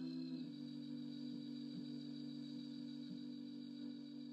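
Soft closing music of sustained organ chords, held steady, moving to a new chord about half a second in.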